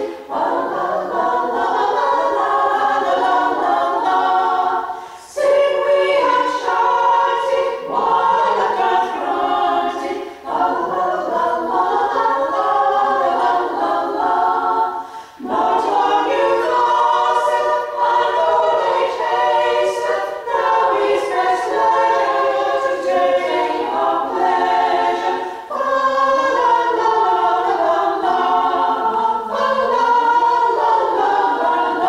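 Women's a cappella choir singing in several parts, with no accompaniment. The singing goes in phrases, broken by short pauses for breath about 5, 10 and 15 seconds in.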